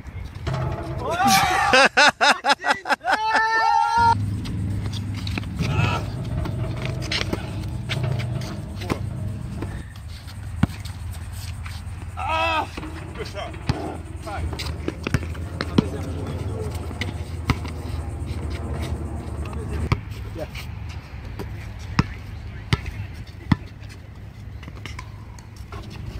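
Pickup basketball game on an outdoor court: the ball bouncing in sharp, scattered knocks, with players' short shouts over a steady low rumble. A loud, stuttering musical sting plays about a second in.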